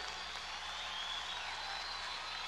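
Concert crowd applauding and cheering in a steady wash of noise.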